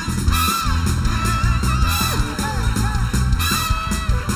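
Live soul band playing an upbeat groove, with bass and drums underneath and the horn section playing gliding lines over them. The audience claps along, about once a second.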